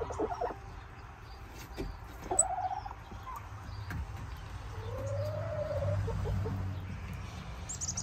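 Domestic hens calling softly while they peck at feed in a metal trough feeder, with scattered clicks from their beaks; a couple of short calls come about two seconds in, then one longer drawn-out call about five seconds in.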